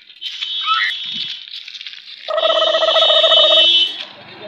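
Electronic ringing sound effect: a steady, loud ringing tone of several pitches at once that starts a little past halfway and lasts about a second and a half before cutting off, after a thinner high-pitched sound with a few short chirps.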